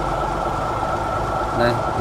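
A boat engine running steadily, a low rumble with a steady high whine over it.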